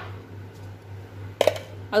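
A glass jar clinks against a granite countertop as it is handled, a short double knock about one and a half seconds in, over a steady low hum.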